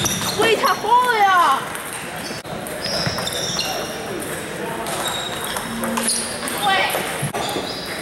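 Table tennis balls clicking against tables and paddles from the many tables in a busy gym hall, with voices carrying in the room.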